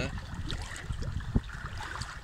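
Low wind rumble on the phone microphone, with a couple of faint taps about half a second and just over a second in.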